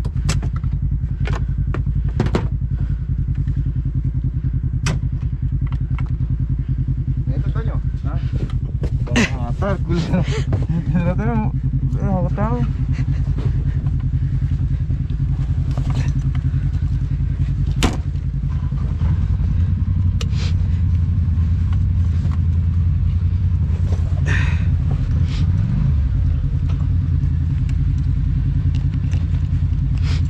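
Polaris RZR side-by-side's engine idling steadily, with a few sharp clicks over it; about two-thirds of the way through it pulls away and runs louder and deeper under load.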